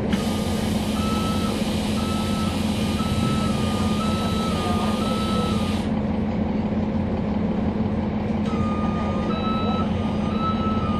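Cabin sound of a 2011 NABI 40-SFW transit bus with its Cummins ISL9 inline-six diesel running at a steady low drone. A beeping warning tone sounds over it, stepping slightly in pitch; it stops about halfway and starts again near the end. An air hiss runs alongside it and cuts off suddenly about six seconds in.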